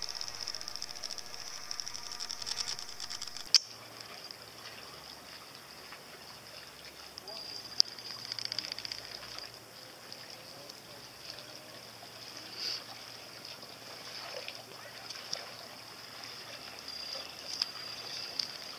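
Outboard motor of a small rigid inflatable boat running at low speed, faint and steady, with water lapping. Two sharp clicks come about 3.5 and 8 seconds in.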